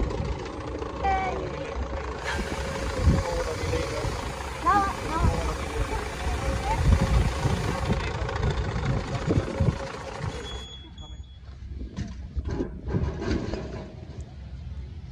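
Steady machine hum with a low rumble and scattered knocks, with brief voices over it; the hum cuts off about ten and a half seconds in, leaving quieter knocks and clatter.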